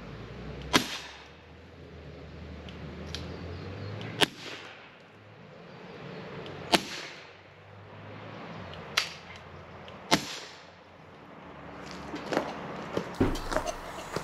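Piexon pepper gun firing: five sharp cracks spread over about ten seconds, each with a short echo, then a few lighter clicks near the end.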